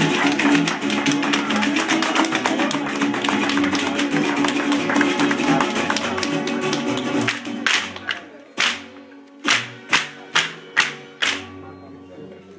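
Live Mexican folk dance music with strummed guitar and strings over a quick rhythm of percussive taps. The music stops about seven seconds in, followed by about seven separate sharp strikes a half second to a second apart.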